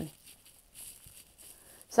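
A pause in a woman's speech: quiet room tone with a faint soft noise near the middle, between the tail of one word at the start and speech resuming at the end.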